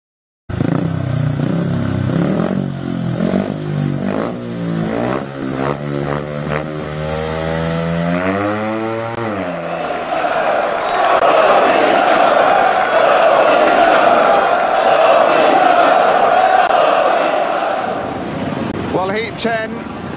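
Speedway motorcycle engines revving, the pitch climbing over several seconds, followed by a loud, steady wash of noise that lasts until a commentator's voice comes in near the end.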